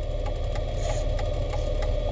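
Car engine running, heard from inside the cabin: a steady low rumble with a faint steady hum over it.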